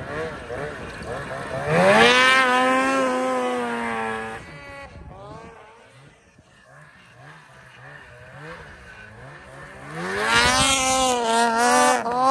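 Two-stroke snowmobile engines at full throttle: one climbs steeply to a high, steady pitch about two seconds in, holds it for about two seconds and falls away. A quieter sled's engine wavers up and down through the middle, and another revs up to a high pitch near the end.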